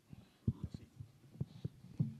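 A handheld microphone picking up handling noise as it is passed across the table: a few soft, irregular low thumps.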